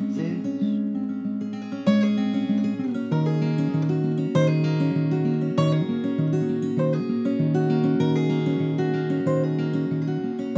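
Acoustic guitar played solo between sung lines: a steady run of plucked notes, with lower bass notes joining in about three seconds in.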